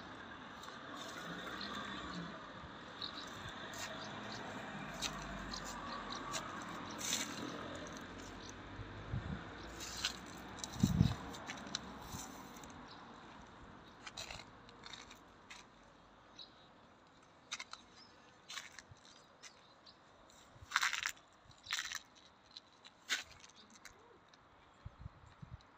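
Faint handling noise from a handheld phone: scattered small clicks and scrapes over a low background hiss that fades after about twelve seconds, with a cluster of louder clicks near the end.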